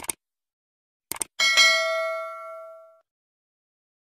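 Subscribe-animation sound effects: a short click, then two quick mouse clicks about a second in, followed at once by a notification-bell ding that rings out and fades over about a second and a half.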